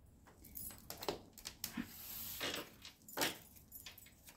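Tarot cards being handled and shuffled at a table: short, irregular rustles and light clicks, with a longer rustle around the middle.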